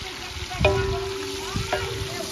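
Sliced calabresa sausage sizzling as it fries in hot fat in a large aluminium pan over a wood fire, stirred with a wooden spoon, with a dull knock a little over half a second in.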